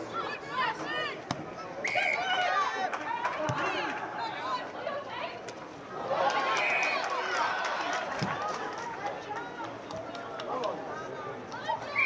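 Players and onlookers calling and shouting across a junior Australian rules football ground, with short steady whistle blasts from the umpire about two seconds in and again around six and a half seconds.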